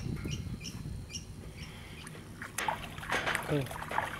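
Low outdoor background noise with faint voices, a brief voice fragment near the end, and three short high pips in the first second.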